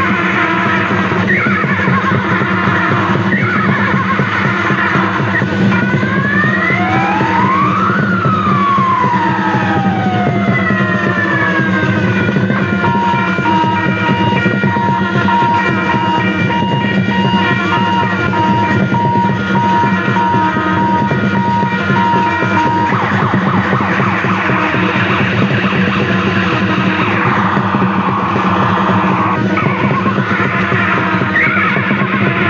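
Loud, continuous music. Siren-like tones sweep up and then down in pitch about eight seconds in, and a repeating beeping tone runs through the middle.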